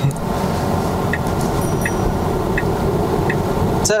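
Steady low road and tyre noise inside the cabin of a Tesla Model 3 under way, with no engine sound, and the turn-signal indicator ticking four times at an even pace of a little over one tick a second.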